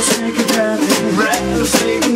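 A small acoustic swing band playing an instrumental stretch between sung lines, with a strummed ukulele and a snare drum keeping a steady beat.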